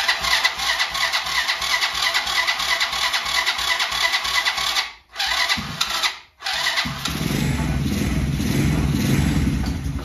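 Electric starter cranking a Chinese ATV's four-stroke engine, started cold without choke. It cranks for about five seconds, stops, cranks briefly again, then the engine catches about seven seconds in and settles into a steady idle.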